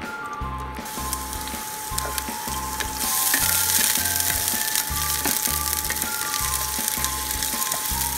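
Onion and garlic sizzling in hot olive oil in a frying pan. The sizzle starts about a second in and grows much louder about three seconds in, over background music with a steady beat.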